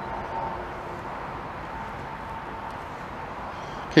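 Steady outdoor background noise, an even hiss with a faint high hum in the first half and no distinct events.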